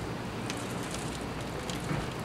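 Potting soil being crumbled by hand and pressed into a plastic bottle around a tomato cutting's stem: a steady rustle with a few faint ticks.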